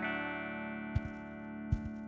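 An electric guitar chord ringing through a small Fender 5F1 Champ-style tube amp and slowly fading. Two faint low knocks sound about a second in and again near the end.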